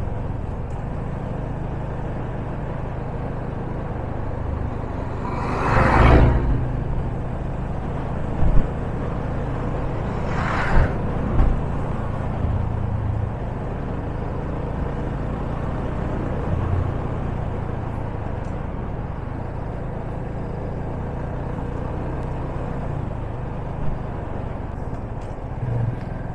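Yamaha FZ25's single-cylinder engine running steadily at cruising speed, heard through wind rush on a bike-mounted camera's microphone. Two brief rushing swells rise and fade, about six and about eleven seconds in.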